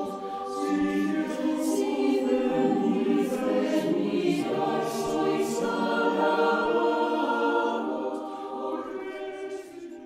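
Background choral music: a choir singing held notes in harmony, fading out near the end.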